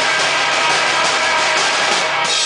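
Live rock band's distorted electric guitars holding a loud, dense, steady wall of sound, with no clear drum hits.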